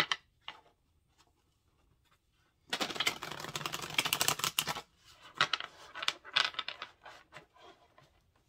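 Tarot deck being riffle-shuffled by hand on a table: a quick rapid flutter of cards lasting about two seconds, starting about three seconds in, then scattered snaps and taps as the deck is gathered back together.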